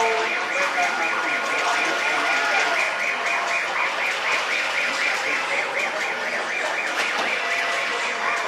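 A rapid, repeating electronic warble, about five chirps a second, over the murmur of a crowd of shoppers. The warble stops near the end.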